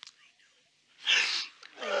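A woman crying: one sharp, breathy sob about a second in, after a near-quiet moment.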